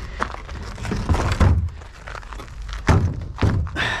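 Plastic wheelie bin being tipped over and handled on its side on gravel, giving several plastic thunks and knocks. The loudest come about a second and a half and three seconds in.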